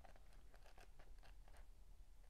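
Near silence with faint paper rustling and small ticks as book pages and loose sheets are handled.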